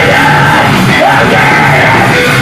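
Heavy rock band playing live, loud and continuous: distorted electric guitar under a vocalist yelling the lyrics.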